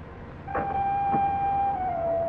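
Film soundtrack: a single sustained high tone starts suddenly about half a second in and steps slightly down in pitch near the end, with two sharp knocks about half a second apart near its start.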